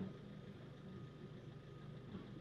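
Faint, steady low hum of a car heard from inside its cabin: engine and road noise with no other event.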